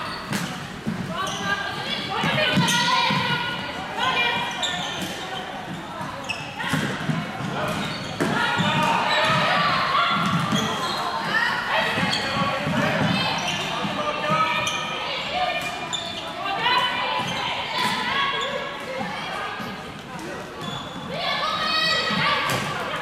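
Voices calling out across an echoing sports hall during a floorball game, mixed with the sharp clacks of plastic sticks and ball and footfalls on the court floor.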